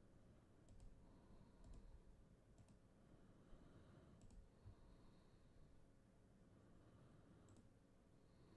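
Near silence broken by a handful of faint computer mouse clicks, some coming in quick pairs.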